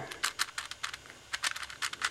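V-Cube 6 (6x6x6 puzzle cube) having its outer layers turned by hand: a quick, irregular run of small plastic clicks as the pieces pass over one another, still a bit clicky rather than smooth.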